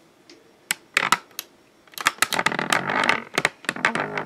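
Light clicks of small plastic Barbie doll shoes and their plastic case being handled, a few separate ones at first, then about two seconds in a busier run of clicking and rustling handling noise.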